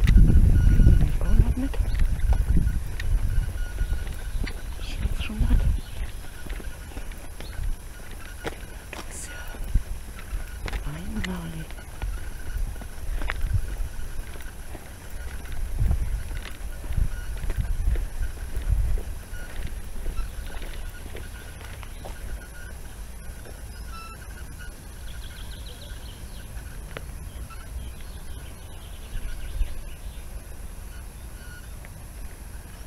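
Outdoor ambience while walking on a woodland path: low rumbling noise on the microphone, loudest in the first few seconds, with a few short, faint, indistinct vocal sounds.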